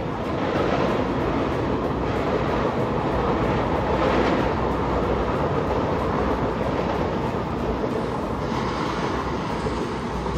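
A Mumbai suburban local train running on the tracks below, a steady noise with a slight swell about four seconds in.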